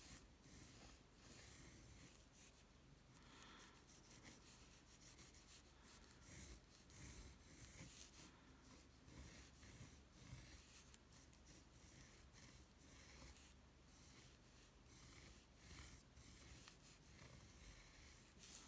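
Faint scratching of a pencil drawing light, curved strokes on paper, the short strokes coming and going irregularly, with the hand rubbing across the sheet.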